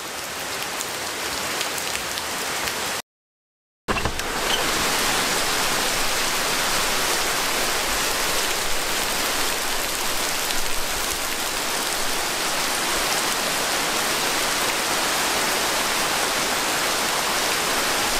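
Heavy rain pouring steadily onto garden foliage and a waterlogged gravel yard. The sound cuts out completely for under a second about three seconds in.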